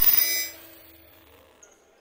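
Electronic logo sting: a sharp hit with high ringing tones that fade out within about half a second.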